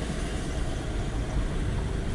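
Steady low engine and road rumble heard from inside the cabin of a slowly moving car.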